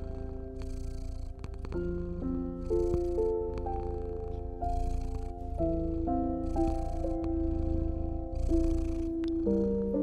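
A domestic cat purring, a steady low rumble with a breathy swell about every two seconds. It is mixed with slow, soft piano notes.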